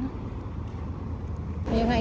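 Low rumble of road traffic as a car or pickup truck drives past. A woman starts speaking near the end.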